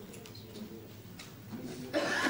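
Low murmur of people talking quietly in a large room, with a couple of faint clicks.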